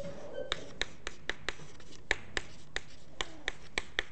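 Chalk on a blackboard as a word is written by hand: a quick, irregular series of sharp taps and short scratches, about three a second.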